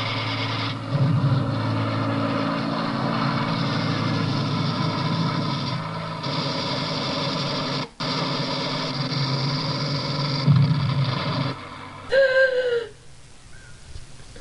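An aircraft engine droning steadily with a deep hum, broken by a brief cut about eight seconds in and stopping about eleven and a half seconds in. Near the end comes a short vocal sound.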